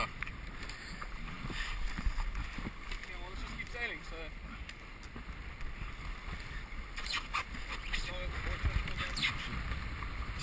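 Wind rumbling on the microphone and water rushing along a Hobie catamaran's hulls under sail, with faint voices in the background and a few short sharp noises about seven seconds in.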